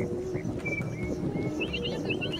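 A bird chirping: a short whistled note, then three quick rising chirps near the end, over a steady low rumble.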